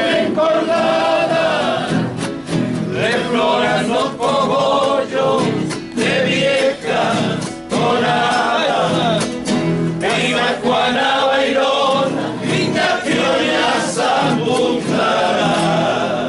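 A group of men singing a cueca together, accompanied by several strummed acoustic guitars.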